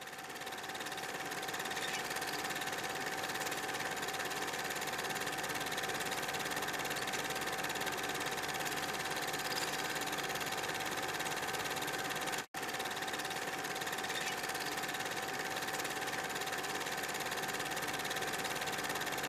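Film projector running, a steady mechanical whir with a constant hum over it. It fades in at the start and drops out for an instant about twelve and a half seconds in.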